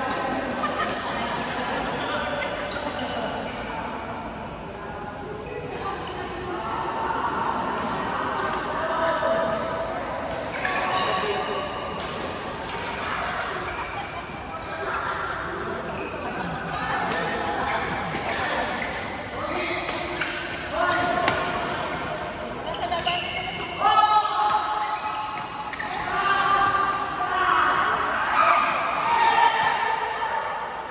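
Badminton rackets striking shuttlecocks in sharp, irregular clicks, over steady chatter of players' voices echoing in a large hall.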